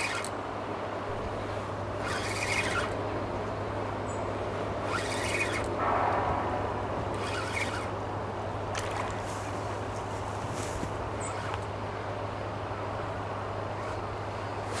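Fishing reel being wound in short bursts, each about half a second, as a hooked small pike is played in, over a steady low hum.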